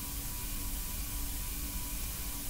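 Steady hiss and low rumble with a faint constant hum, with no clear music or voices.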